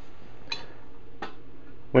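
Two faint light clicks from a steel weight-distributing hitch spring bar being handled, over a low steady background.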